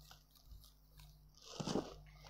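Soft rustling of a folded embroidered dress's fabric being handled and unfolded, with a louder rustle about three-quarters of the way through.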